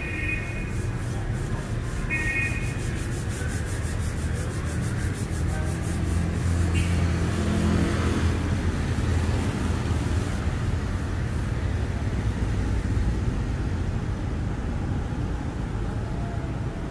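City street traffic at night: a steady low rumble of engines and tyres that swells as a vehicle passes in the middle. Two short high beeps sound near the start.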